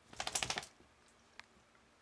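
A wire fox terrier shaking herself, her collar tags jingling in a quick metallic rattle of about half a second near the start. A single faint click follows about halfway through.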